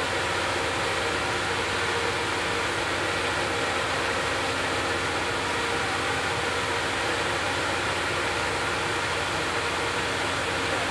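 Steady, unchanging hum and hiss of a stopped Amtrak Superliner passenger train idling at the platform.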